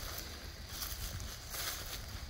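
Faint, even rustling of dry leaf litter underfoot on a woodland floor, with no distinct footfalls standing out.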